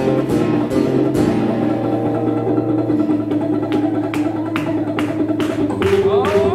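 Live acoustic guitar strummed in a steady rhythm, with sustained chords and a low held note under it, in an instrumental passage without singing.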